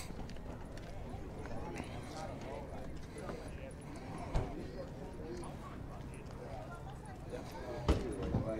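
Indistinct talking from people nearby over steady outdoor background noise, with one short knock about four and a half seconds in.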